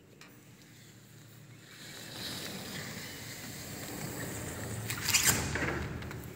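uPVC sliding door shutter rolling along its track, the rumble swelling over a few seconds, then a short knock about five seconds in as the sash meets the frame.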